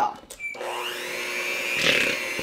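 Electric hand mixer switched on about half a second in, its whine rising as it comes up to speed, then running steadily with its beaters churning a thick dough of butter, cream cheese and almond flour.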